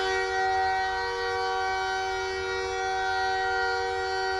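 A steady horn-like chord, several tones sounding together and held without any change in pitch or level.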